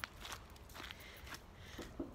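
Footsteps of a person walking at an even pace, about two steps a second, fairly faint.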